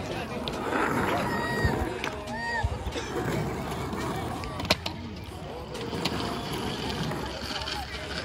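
Skateboard wheels rolling over rough concrete, with background voices of other people; a sharp click a little under five seconds in.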